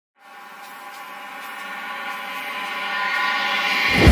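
Cinematic title-sequence riser: a sustained chord of steady tones that swells steadily louder, building up to a deep low boom that hits right at the end.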